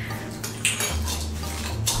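A plastic spoon clinking and scraping in a clear plastic cup of Pop Rocks popping candy, a few separate clicks through the moment.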